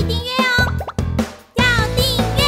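Bright children's music jingle with quick sliding cartoon sound effects. It fades out about a second and a half in, and a new loud phrase starts at once.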